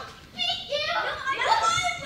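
Several children shouting and crying out without words, high-pitched cries coming one after another.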